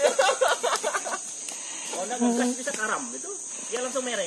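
Steady high-pitched drone of insects in the rainforest, running unbroken under men's voices talking at times.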